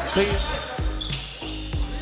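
A basketball being dribbled on a hardwood court, a few separate thumps of the bounce, with a short high squeak about a second in.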